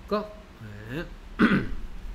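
A man clearing his throat: two short hums, the second rising in pitch, then a louder throat clear about one and a half seconds in.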